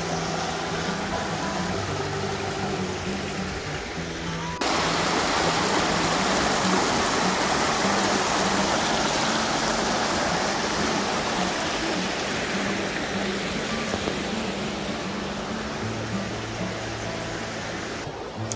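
Shallow rocky creek rushing over stones in a steady wash of water, which gets suddenly louder about four and a half seconds in. Faint music plays underneath.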